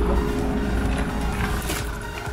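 Background music over a low, steady rumble.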